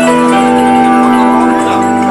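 Rock band playing live, an instrumental opening of long held chords with an organ prominent.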